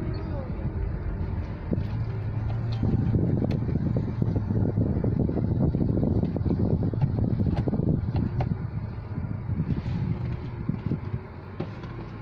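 A car driving, heard from inside the cabin: a steady low hum under uneven road rumble, which eases off a little near the end.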